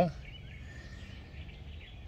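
Faint outdoor background noise with a low steady hum and a couple of faint bird chirps.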